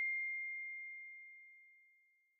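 A single high, pure chime ringing out from the logo sting, one steady tone fading away to nothing about a second and a half in.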